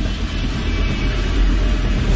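Steady, deep rumble of a jet airliner in flight, a sound effect laid over a computer animation, with background music underneath.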